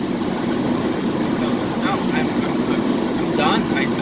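Steady drone of a car's engine and tyres heard from inside the cabin while driving.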